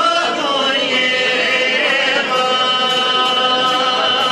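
Live Albanian folk song: several men singing together into microphones, accompanied by a bowed violin and long-necked Albanian lutes (çifteli and sharki). The voices slide between notes at first, then settle into long held notes about halfway through.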